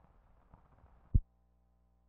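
Faint hiss of an old film sound track, a single short low thump a little past a second in as the film passes a splice onto blank leader, then only a faint steady hum.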